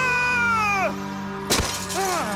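A man's high, drawn-out scream of horror, held for about a second and then falling away. About a second and a half in comes a sharp crash of a glass hand mirror shattering, with small glass pieces tinkling after it, over dramatic background music.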